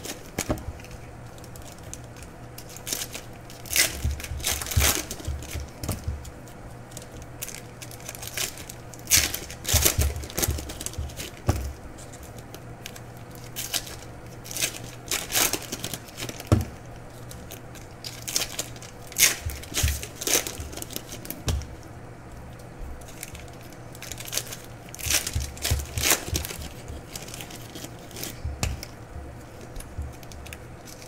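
Foil trading-card pack wrappers, 2014 Topps Chrome Football hobby packs, being torn open and crinkled by hand, in irregular bursts of tearing and crackling every few seconds.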